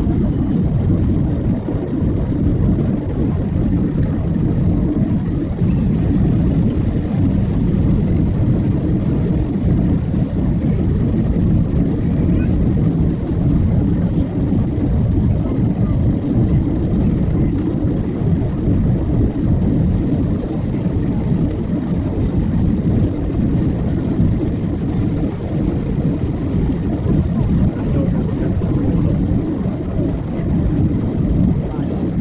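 Steady jet engine and airflow roar inside the cabin of a jet airliner descending on approach, deep and even, with a faint high whine above it.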